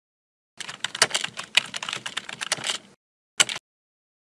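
Computer keyboard typing: a rapid run of key clicks lasting about two seconds, then one more short keystroke near the end.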